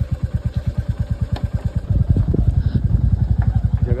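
Royal Enfield single-cylinder motorcycle engine running on a rough gravel track, with an even, rapid exhaust beat that gets louder about halfway through.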